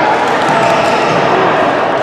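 Busy indoor badminton hall: a steady din of voices mixed with racket hits on shuttlecocks and shoes on the court floor from the many courts in play, echoing in the large hall.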